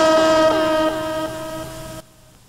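Buzzer sounding the signal that lunch is near: one long steady tone that fades over the last second and stops near the end.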